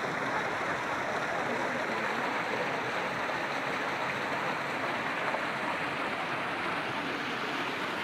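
Water cascading over the rocks of an artificial park waterfall, a steady splashing rush.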